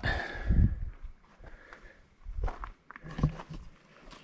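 Quiet scuffing and a few soft, scattered knocks as a handheld camera is moved about, with a short low sound at the start.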